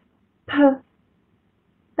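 Speech only: a single short spoken syllable, "p", said once as a pronunciation demonstration.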